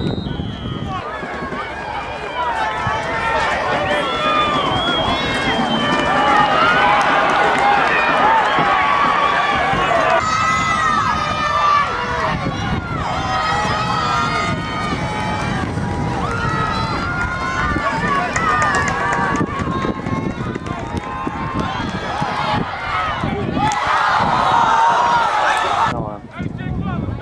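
Spectators in the stands talking and calling out at once, several overlapping voices close by, with a short high tone right at the start.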